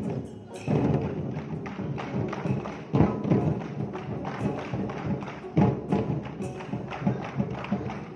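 A troupe of large gold-and-red barrel drums, beaten with sticks in a fast ensemble rhythm. Heavier accented hits land about three seconds in, again midway through the second half, and near the end.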